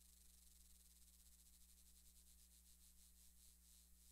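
Near silence: steady electrical hum and hiss, with faint scratchy rustling in the second half.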